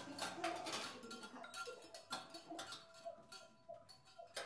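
Large metal bowl tapped and rattled from inside with a metal tube and a thin stick: a run of quick, irregular clicks and knocks, with the bowl's ringing tones held under them. The taps thin out toward the end.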